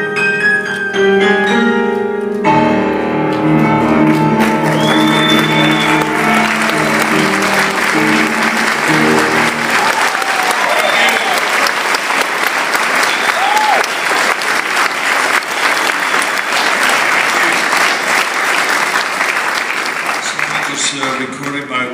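A piano song ends on sustained chords that ring out and die away over about the first ten seconds. An audience breaks into applause about two seconds in, with a whistle or two, and keeps clapping after the music stops.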